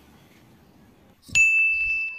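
A single bright "ding" sound effect, a bell-like chime that starts suddenly after about a second of near quiet and rings on, fading slowly.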